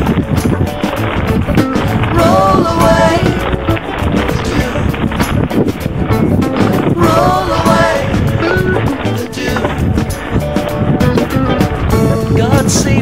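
Background music: an instrumental stretch of a song with a steady, full accompaniment and a melodic lead line coming in about two seconds in and again about seven seconds in.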